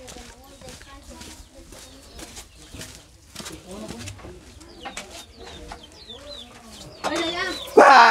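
Low background chatter of several people, with chickens clucking and a few short bird chirps. A voice comes in much louder near the end.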